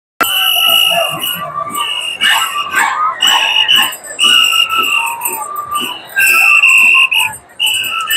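Andean carnival music played in the street: shrill, high held notes from wind instruments repeat in phrases over a steady drum beat.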